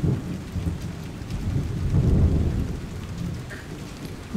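Rain with a low rumble of thunder that swells to its loudest about two seconds in.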